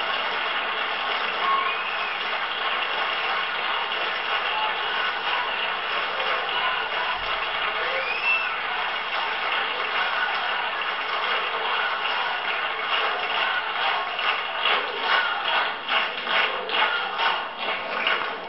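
Audience applause with a few whistles, which settles in the last few seconds into rhythmic clapping in time, about two claps a second.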